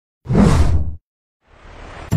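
Whoosh transition sound effect: one swish of noise lasting under a second, then a fainter swell building near the end.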